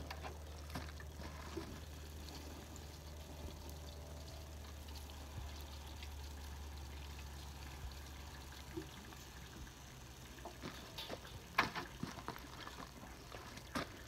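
Water poured from a watering can into a galvanized tub of hot biochar, quenching it: faint pouring and trickling. A few sharp knocks come near the end.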